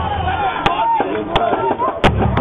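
Two sharp percussive clicks about 0.7 s apart over a background of people talking.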